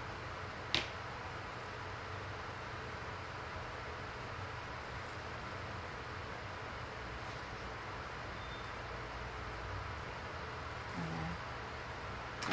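Steady low room hum with one sharp click a little under a second in, as a small plastic clip snaps shut on a rolled curl of deco mesh.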